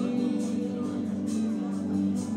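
Instrumental song accompaniment: guitar strumming over steady held chords.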